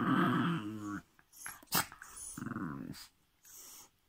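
Dog growling at another dog in play: a long wavering growl that stops about a second in, a sharp click, then a second, shorter growl.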